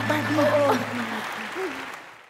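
Studio audience applauding, with voices calling out over the clapping; the sound fades out near the end.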